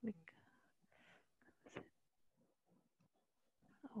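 Near silence on a video call, broken by a few faint, brief snatches of voice: a short syllable at the start, soft murmurs about a second in, and speech resuming near the end.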